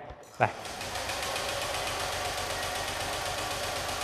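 Honda scooter's electric starter cranking the engine steadily for nearly four seconds without it firing: a crank-but-no-start condition.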